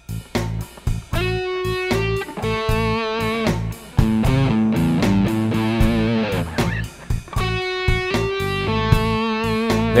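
Solid-body electric guitar playing a slow blues lick that moves among the sixth, flat seventh and root. It comes in short phrases of sustained single notes, one held with wide vibrato about halfway through.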